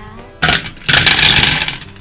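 Small round candies poured from a tube into the clear plastic dome of a toy gumball-style candy machine: a short clatter about half a second in, then a dense rattle of candies hitting the plastic for about a second.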